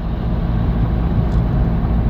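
Steady low rumble of a car, heard from inside the cabin, with a low engine hum.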